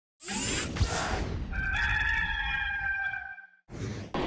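Intro sound effect: a whoosh, then a rooster crowing in one long call of about two seconds that dips slightly at the end, then a short second whoosh near the end.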